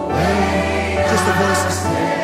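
Live gospel worship music: a male lead singer and a choir singing with the band over a held bass note.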